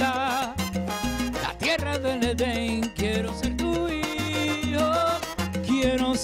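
Salsa music: a band with a moving bass line under a man's voice singing a Spanish-language song with wavering held notes.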